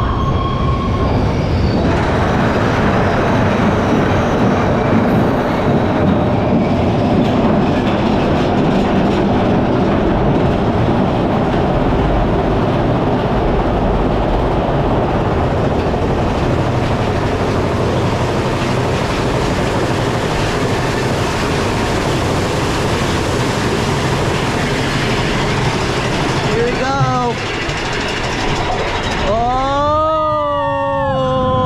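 Big Thunder Mountain Railroad mine-train roller coaster running on its track, heard from a rider's car: a loud, steady noise of the train in motion.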